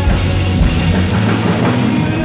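Live worship band playing a song, with drum kit, electric guitars, bass and keyboards together.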